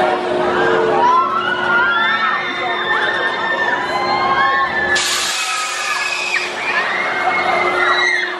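Riders on a Huss Top Spin screaming as the gondola swings and flips, many voices overlapping in long screams that slide up and down. A steady hum runs underneath, and a loud hiss comes in about five seconds in.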